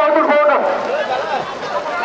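Men's voices shouting and calling out, several at once, in Tamil.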